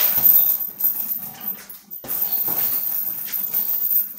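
Strikes landing on a hanging heavy bag: a hard hit at the start and several more through the combination, with rustle and rattle between the blows.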